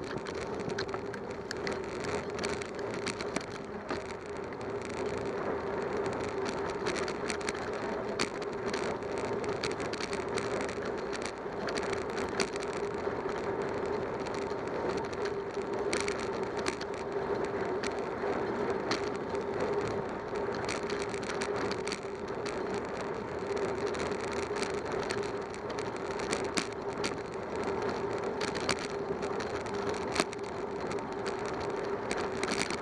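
Road noise of a bicycle riding, picked up by a bike-mounted camera: a steady hum of tyres and moving air, with frequent small clicks and rattles from bumps in the road surface.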